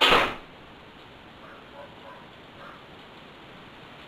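A short, loud swish of about a third of a second at the very start as monofilament fishing line is pulled off its spool, followed by a few faint, brief sounds over a low background.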